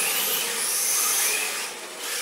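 Yokomo MR4TC 1/10-scale RC drift car, converted to rear-wheel drive, with its electric motor whining and the pitch rising and falling with the throttle, over a hiss of its drift tyres sliding on polished concrete. The sound dips briefly near the end.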